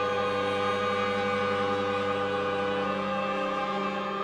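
Slow contemporary ensemble music: a chord of long, steady held tones, with a slow pulsing where close pitches beat against each other. Some of the lower notes shift about three seconds in.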